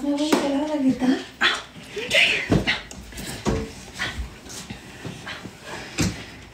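A dog whimpering in short cries, with a woman's voice in the first second and a couple of low thumps a few seconds in.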